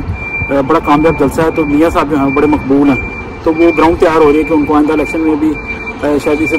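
A man talking, outdoors, with a faint high-pitched beep repeating in short, evenly spaced pulses behind his voice and a low background rumble.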